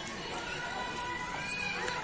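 Faint, distant voices of children and adults chattering, without clear words.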